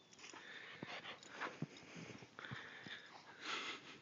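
A dog plunging through deep powder snow: soft, irregular rustling and crunching of snow with scattered small clicks.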